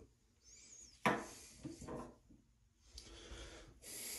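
Quiet handling and rubbing noises in a small tiled bathroom, with a sharp knock about a second in.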